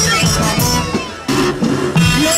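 Saidi mizmar music: double-reed mizmar shawms playing a bending, ornamented melody, with a brief dip in level just past a second in before it comes back full.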